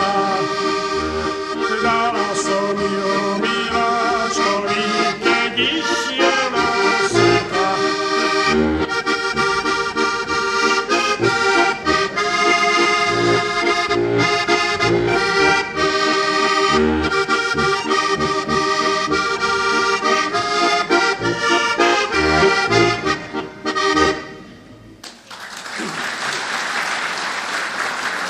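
Heligonka, a diatonic button accordion, playing a lively folk tune with melody chords over regular bass notes. It stops about 25 seconds in and applause follows.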